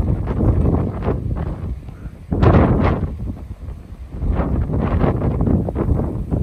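Wind buffeting the microphone in uneven gusts, a loud rumbling rush that swells and dips every second or so.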